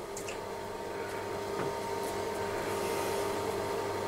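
Chopped cauliflower frying gently in a non-stick pan on low heat: a soft, steady sizzle that grows slightly louder, with a plastic spatula now and then lightly pushing the pieces around. A steady low hum runs underneath.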